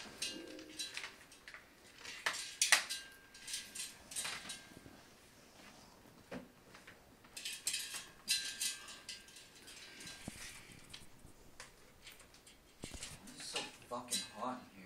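Rustling and light clinking of things in a bag as a cat noses and paws through it, in short irregular bursts.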